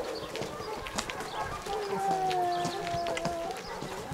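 Footsteps of several people walking on a concrete road, with a long drawn-out call starting a little before halfway and held for nearly two seconds, its pitch sinking slightly at the end.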